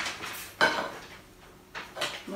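Metal tube of a tubular clothes-rack frame knocking and clinking against metal, a few sharp knocks with a brief metallic ring, the loudest just over half a second in.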